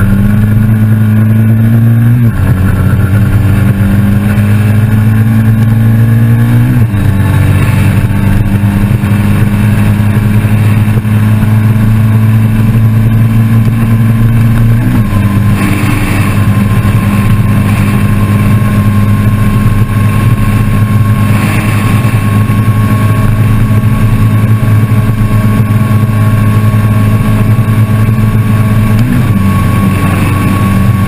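Triumph Thruxton R's 1200 cc parallel-twin at full throttle, heard from on board. The engine shifts up about two seconds in and again about seven seconds in. After that it pulls in top gear with a long, slow rise in revs, held back by tall 17/37 gearing.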